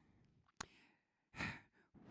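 Close-miked breath of a man holding a handheld microphone: a small click about half a second in, then a short breath in about a second and a half in, just before he goes on speaking.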